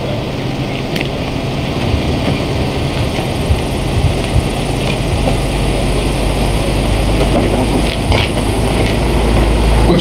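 Steady low engine rumble on an open outdoor microphone, growing louder toward the end, with a few light knocks.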